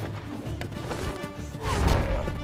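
Soundtrack of a fight scene from a TV series: background score with clashing and striking effects, swelling louder with a low rumble near the end.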